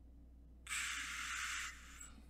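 A steady hiss lasting about a second, starting a little over half a second in.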